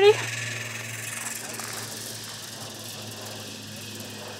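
Zipline pulley trolley rolling along the cable, a steady whirring hiss that slowly fades as the rider travels away down the line.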